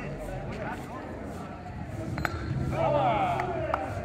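A single sharp metallic clink with a brief ring about two seconds in, and a smaller click near the end, from the thrown pieces of the throwing game, amid men's voices and chatter.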